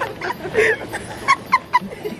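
A man laughing hard in short, high yelping bursts, ending in three quick yelps about a quarter of a second apart.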